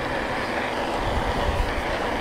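Steady rush of wind and tyre noise from an electric bike riding down a paved road at about 22 mph, with low wind buffeting on the microphone swelling in the middle.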